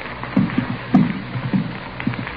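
Footsteps walking across a floor, a radio-drama sound effect: short dull steps about two a second.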